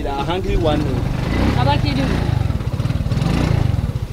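An engine running with a rapid, even low pulsing, under talking voices.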